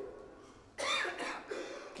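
A man coughs once, briefly, about a second in, close to a microphone.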